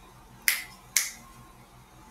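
Two sharp clicks about half a second apart, each dying away quickly.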